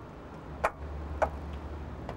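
Car fuel filler cap being turned by hand, with two sharp clicks about half a second apart over a low steady hum.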